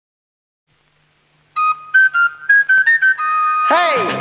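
Silence for about a second and a half, then the opening of a 1960s TV commercial jingle: a flute plays a quick run of short, high notes and ends on a held note. Just before the end a sliding swoop in pitch leads into the sung jingle.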